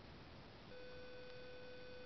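Faint hiss, then a steady electronic tone starts under a second in and holds, with faint ticks about once a second.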